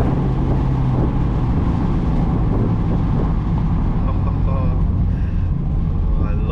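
Mazda MX-5 roadster with the roof down, driving at speed: its 1.5-litre four-cylinder engine runs with a steady hum under heavy wind and road noise in the open cockpit.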